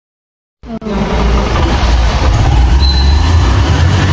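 Motorcycle engine starting about half a second in, then running loud with a heavy low rumble.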